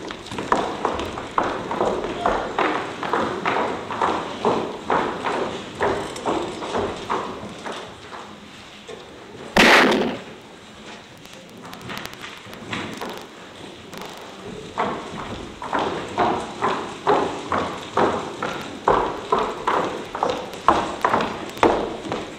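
Marching footsteps striking a wooden hall floor, about two steps a second, stop for a while and then start again. One loud bang near the middle is the loudest sound.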